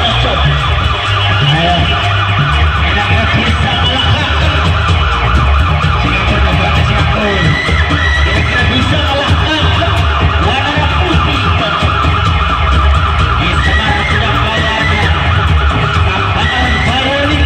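Loud music played over a sound system for a Reog street performance: a heavy, steady bass with a wavering, high melody line running above it.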